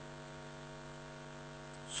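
Steady electrical mains hum on the amplified microphone line, one even low tone with a row of overtones, heard in a pause in the speech.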